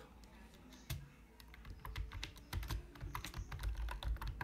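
Computer keyboard typing: a run of irregular key clicks as a word is typed.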